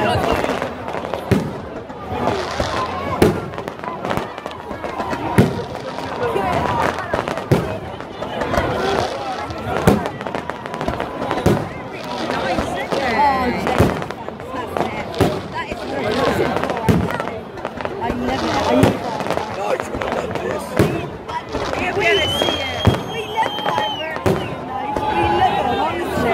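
Aerial fireworks going off: sharp bangs every second or two, with crackling between them, over the voices of a watching crowd.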